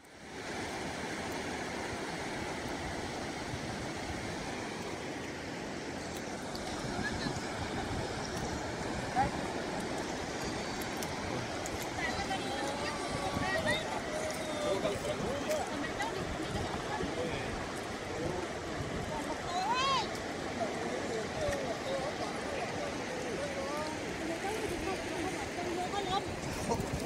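Steady rush of surf washing on the shore, with several people talking indistinctly from about six seconds in.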